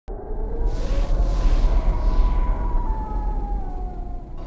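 Logo intro sting of sound design: a heavy deep drone that starts suddenly, with swelling whooshes of noise early on and a long tone gliding slowly downward in pitch.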